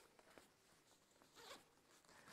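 Faint zipping and handling of a backpack: a few short rasps, the strongest about one and a half seconds in.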